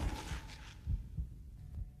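Faint low thuds on a phone microphone, a few irregular knocks with a light rumble, as the echo of a spoken word dies away in the first part.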